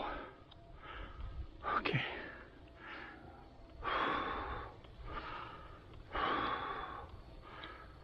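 A cyclist breathing hard while pedalling, a loud breath every second or so, some of them long exhalations.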